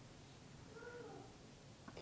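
Near silence: room tone, with one faint, brief pitched sound about a second in.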